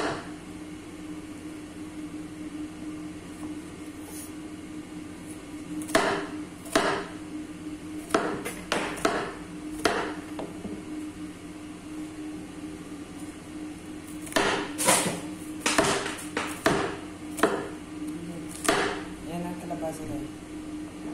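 A chef's knife chopping bitter melon on a wooden cutting board: irregular sharp knocks of the blade hitting the board, some in quick runs, over a steady low hum.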